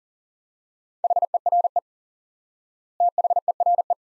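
Morse code at 40 words per minute, sent as a steady single-pitch tone keyed in rapid dots and dashes. Two words are sent, a shorter one about a second in and a slightly longer one about three seconds in, spelling "here" and "there".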